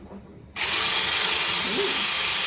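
Electric hand mixer switched on about half a second in and running steadily at speed, beating egg whites.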